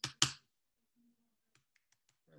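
Computer keyboard keystrokes: two sharp key presses right at the start, about a quarter second apart, then a few faint taps near the end as new code is typed.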